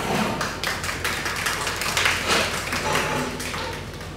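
A small group of people applauding, quick irregular hand claps that thin out near the end.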